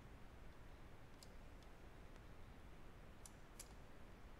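Faint computer mouse clicks, about four, over near-silent room tone.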